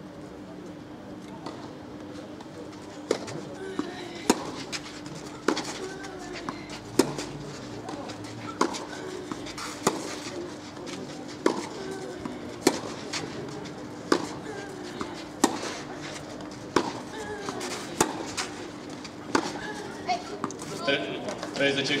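Tennis ball hit back and forth with rackets in a long doubles rally on a clay court: about fifteen sharp pops, roughly one every second and a half, starting a few seconds in. Under them run a murmur of spectators' voices and a steady low hum, and voices swell near the end as the point finishes.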